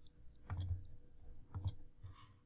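Two computer mouse clicks, about a second apart.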